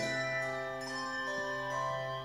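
Handbell choir playing: a chord is struck at the start, including a low bass bell that keeps ringing, and further bell notes enter over the sustained chord.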